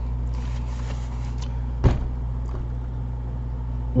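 A steady low hum, with a single sharp knock a little under two seconds in.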